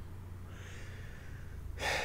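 A man's breathing: a faint breath out, then a short, audible intake of breath near the end, over a low steady hum.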